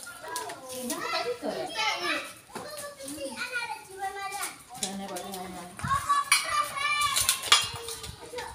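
Children's and women's voices chattering and calling over one another, with children playing close by. A few sharp clicks or knocks come near the end.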